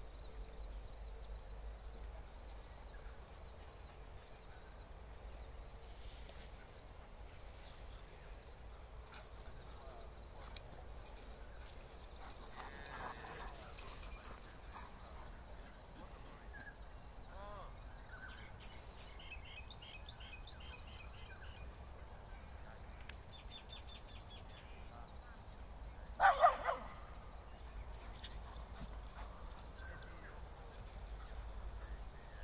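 Dogs playing rough together on grass, with a few brief yelps and one loud, short bark about 26 seconds in. A steady low wind rumble runs on the microphone throughout.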